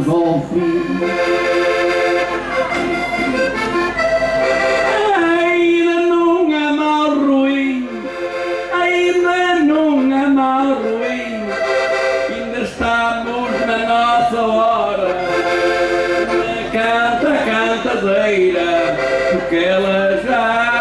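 Diatonic button accordion (Portuguese concertina) playing a melody on its own: an instrumental interlude between sung verses of a desgarrada.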